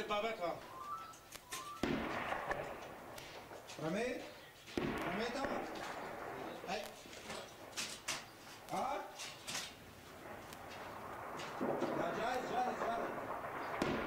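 Gunfire during an armoured assault: scattered sharp shots through the whole stretch, with two heavier bangs, about two seconds in and just before five seconds, each trailing off in a rumble. Voices call out between the shots.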